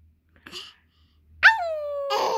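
A short breathy sound about half a second in, then a loud, high-pitched, drawn-out vocal 'aaang' that starts about a second and a half in and slides steadily down in pitch.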